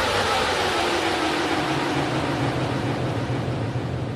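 A rushing whoosh of noise with a tone sliding slowly downward, fading out near the end: a closing sound effect at the tail of an intro soundtrack.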